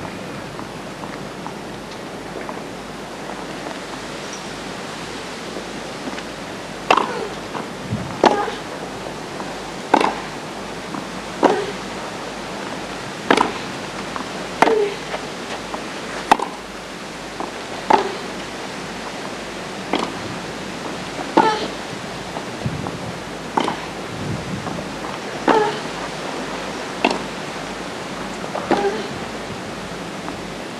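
Tennis ball hit back and forth in a long baseline rally on a hardcourt: short hollow racket strikes about every second and a half, starting about seven seconds in. A steady hiss runs underneath.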